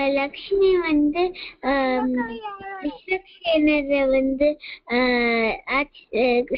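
A child chanting a devotional verse in a sing-song recitation melody, one voice in phrases of long held notes with short breaths between them.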